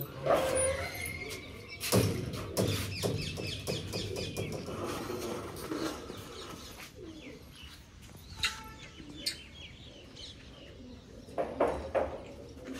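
Birds chirping and calling, with scattered sharp knocks and clatters as a pigeon-perch umbrella frame is handled, the loudest about two seconds in and near the end.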